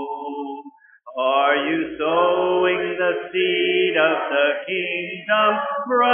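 Church congregation singing a hymn a cappella: a held chord ends just before a second in, a brief pause for breath follows, and the singing picks up again with the next line.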